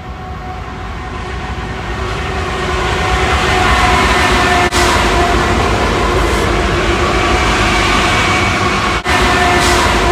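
Freight train hauled by diesel locomotives passing close by: a loud, steady rumble with steady engine tones, growing louder over the first few seconds. There are two short dropouts, one near the middle and one near the end.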